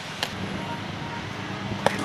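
Steady outdoor background noise with two short, sharp clicks, one just after the start and one near the end.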